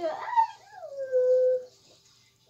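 A drawn-out whining cry: it rises sharply at first, then slides down and holds steady on one pitch before stopping.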